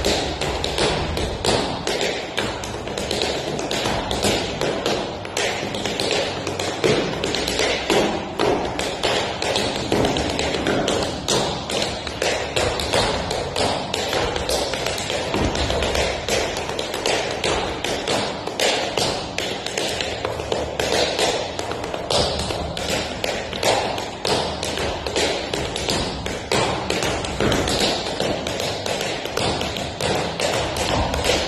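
Metal taps on tap shoes striking a wooden studio floor in a dense, unbroken stream of quick strikes, with heavier thuds mixed in: a tap dancer dancing steadily.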